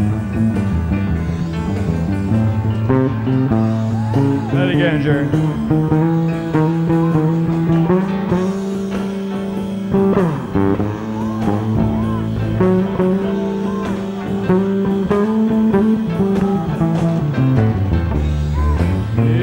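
Live rock band playing an instrumental solo spot: electric bass and electric guitar over a steady groove, with several notes bent in pitch. The sound comes straight off the soundboard.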